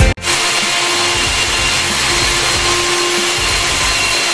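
Electric core drill on a wall-mounted stand cutting steadily through a masonry wall, a loud even grinding with a faint high whine, boring the hole for a kitchen chimney's exhaust duct.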